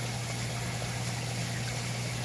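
Irrigation pump of a Dutch-bucket hydroponic system running with a steady low hum, while a thin stream of water from a drip emitter splashes into a plastic grow pot. The return valve is closed, so the feed line is under raised pressure.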